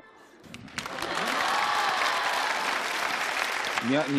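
Studio audience applauding, swelling in about a second in and holding steady until it cuts off near the end.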